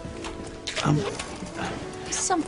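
Background music of soft held notes, with a short voice sound just under a second in.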